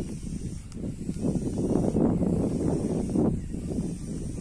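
Wind gusting over the microphone: a low, buffeting rumble that swells for a couple of seconds and then eases off.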